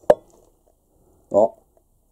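A single sharp click or knock just after the start, with a brief ring after it.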